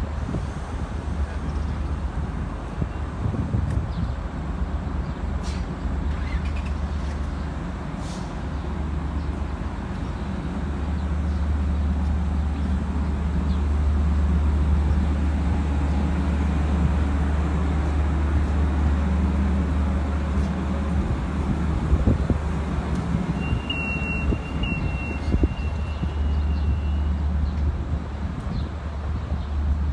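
A diesel-hauled Long Island Rail Road train standing at the platform: a steady, deep diesel drone with a low hum. A short high-pitched tone sounds near the end.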